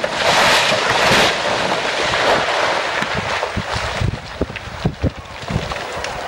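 Rockfall from a cliff face just after a controlled blast: a loud rush of falling rock and debris in the first second or so, then scattered knocks and clatter of stones tumbling down the slope.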